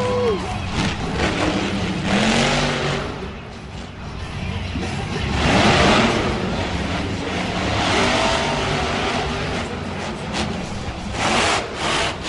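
Monster truck Maximum Destruction's supercharged V8 running hard and revving through a freestyle run. The engine rises in loud surges about two, six and eleven seconds in, over arena crowd noise.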